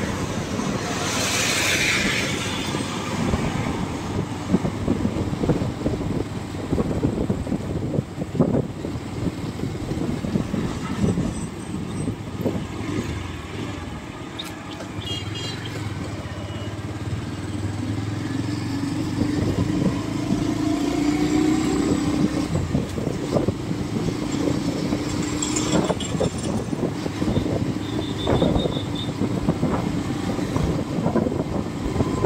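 Road noise from riding along a street in a moving vehicle: a continuous rumble of wind and running, with a car passing close by about a second or two in and an engine hum swelling and fading in the middle.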